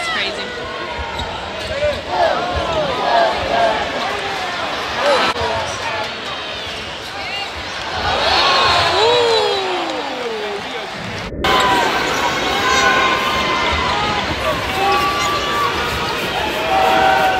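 A basketball being dribbled on a hardwood court during live play, with short squeaks over the steady noise and chatter of an arena crowd.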